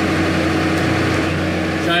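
Off-road vehicle's engine running steadily as it drives along a dirt track, a continuous even drone heard from inside the cab.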